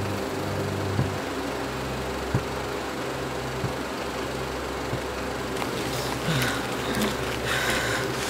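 A film projector running, a steady mechanical whir over a low hum with a few soft clicks about a second apart.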